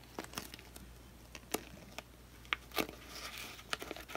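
Faint crinkling of blue painter's tape under gloved hands as a wet acrylic pour on a wood disc is handled, with scattered light ticks.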